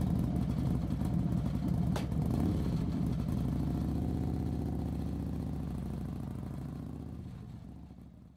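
Motorbike engine running steadily while riding, with a short click about two seconds in and a brief rise in engine pitch just after. The sound then fades away toward the end.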